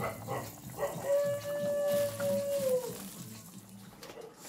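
A dog howling: one long, steady call that drops in pitch as it ends.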